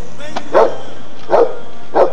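A dog barking three times, each bark short and loud, over faint background music.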